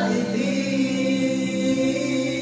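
Male voices singing into microphones over backing music, holding a long note.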